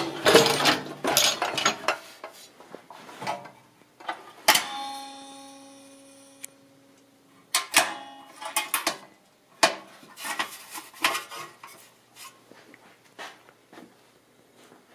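Steel scooter parts being handled: irregular metal clattering and clanks. One clank, about four and a half seconds in, rings on for about two seconds.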